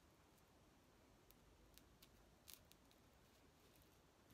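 Near silence with a few faint, short clicks and rustles, the loudest about two and a half seconds in, from hands handling a strip of hook-and-loop tape on a quilted flannel square.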